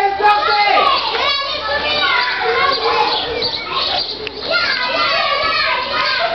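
Several young voices chattering and talking over one another, too jumbled to make out words.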